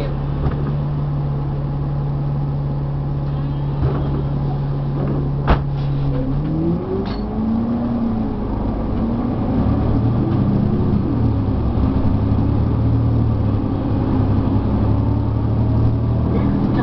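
Cummins ISL9 diesel engine of an articulated Nova Bus LFS idling steadily, then, about six seconds in, pulling away: the engine note rises, drops and rises again as the ZF automatic transmission shifts up. A single sharp knock sounds just before it moves off.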